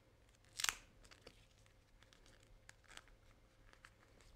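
Duct tape being pressed and folded by hand to seal a strap: one short crackle about half a second in, then faint rustling and a few light ticks.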